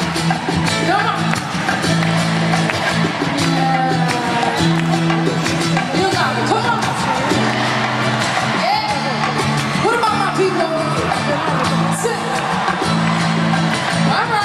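Live band playing a mid-tempo pop song over a steady, repeating bass line while an arena crowd sings along to the chorus.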